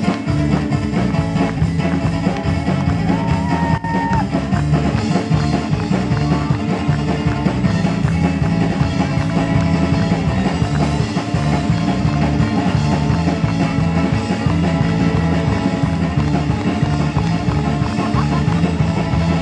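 Live band playing rock-style music: amplified ukulele over electric bass and drum kit, with a man singing.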